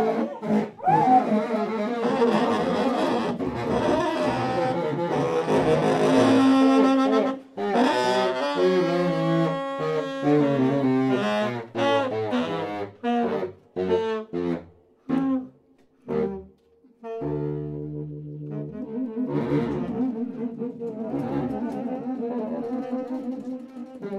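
A live jazz saxophone quartet plays a blues, with baritone and bass saxophones on the low parts. The texture is dense at first. From about halfway there are short stabbed chords with silent gaps between them. Then low sustained notes come in, and the full ensemble plays on.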